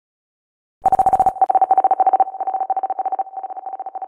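A single mid-pitched electronic beep, chopped into fast pulses and grouped in short choppy runs, starts about a second in and grows quieter toward the end. It sounds like a telephone-tone sound effect.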